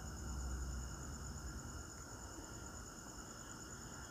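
Faint steady background: a continuous high-pitched trilling over a low hum.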